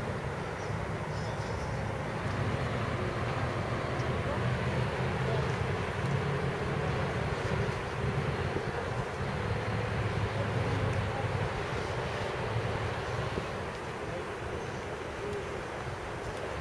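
Steady, unbroken hum of distant city traffic, a constant low rumble with a hiss over it and no distinct single event.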